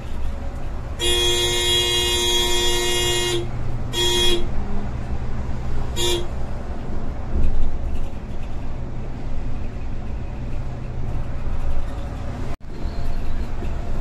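A vehicle horn, heard from inside the front of a moving coach: one long blast of about two seconds, then two short toots about two seconds apart. Under it runs the steady drone of the bus's engine and tyres, and the sound drops out for an instant near the end.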